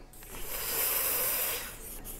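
Felt-tip marker scratching across a paper pad in one steady, hissy stretch of about a second and a half, as a prediction is written down.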